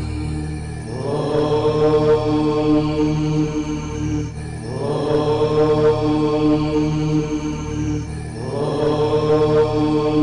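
Devotional title music: a sustained chant over a steady low drone. The chant begins anew about every three and a half seconds, each phrase gliding up and then holding.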